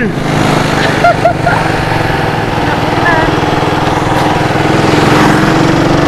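Suzuki Raider 150 motorcycle's single-cylinder four-stroke engine running steadily while riding, its pitch rising gradually over the last two seconds as it speeds up.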